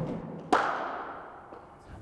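A single sharp crack of a cricket ball impact in an indoor net hall, about half a second in, with the hall's echo ringing on and dying away.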